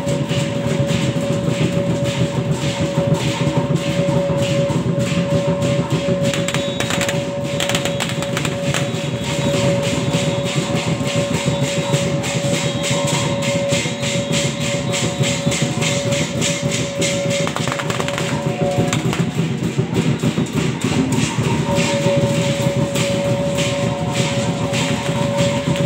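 Loud live festival music: fast, dense percussion beating under a long held high note. The note breaks off about two-thirds of the way through and comes back near the end.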